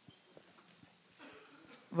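Quiet room tone with a few soft, scattered knocks and clicks, and faint voices in the second half.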